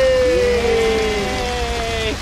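Several voices holding long drawn-out notes together, like a drawn-out cheer, with the pitch sagging slightly. They break off together just at the end, over the steady hiss of rain.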